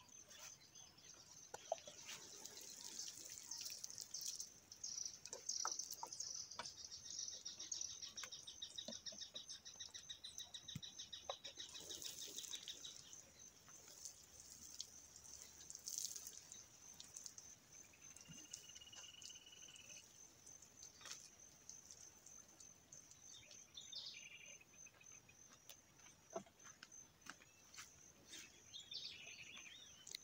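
Faint outdoor chorus of crickets trilling steadily, with a bird chirping a few times. A soft rushing hiss, like running or poured water, is heard during roughly the first dozen seconds.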